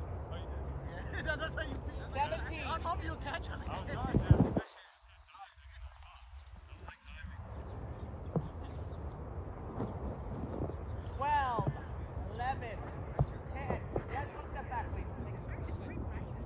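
Players' voices shouting and calling across an open field, heard from a distance over a steady low rumble. A loud thump comes about four seconds in, and then the sound nearly drops out for a couple of seconds.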